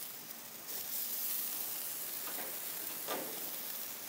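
Shrimp and vegetable skewers sizzling on a hot gas-grill grate as they are laid down: a steady hiss that swells about a second in, with a couple of faint knocks of the metal skewers on the grate.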